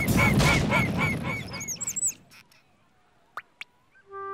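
Cartoon sound effects: a rapid run of about seven honk-like calls, about four a second, over a loud rumbling noise. It cuts off after about two seconds, leaving near silence with two faint clicks.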